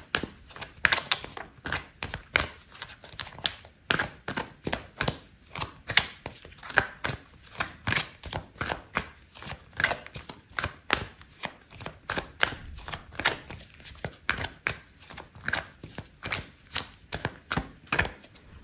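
A deck of oracle cards being shuffled by hand: a steady run of quick card clicks and flicks, about three a second.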